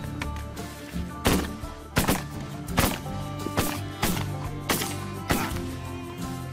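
A volley of about six shotgun shots, spaced unevenly at roughly one every three-quarters of a second, over steady background music.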